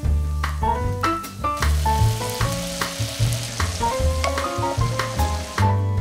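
Chickpeas sizzling as they fry in oil in a Dutch oven, with the sizzle loudest through the middle, under background music with a steady bass line.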